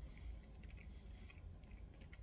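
Faint chewing of a grilled chicken wing: a few small soft clicks over a low steady hum.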